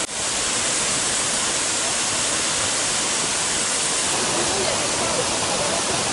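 Waterfall: a steady, even rush of falling water.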